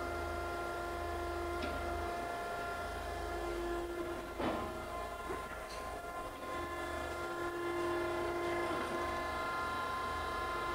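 Okamoto ACC-1224-DX hydraulic surface grinder running its automatic surface-grinding cycle, the table traversing back and forth with the cross-feed stepping and the wheel downfeeding. A steady machine whine with several held tones over a low hum, and a single knock about four and a half seconds in.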